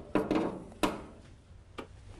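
Three short clicks and knocks, under a second apart, of an electrical component and its bracket being handled and fitted into place against the Beetle's metal body.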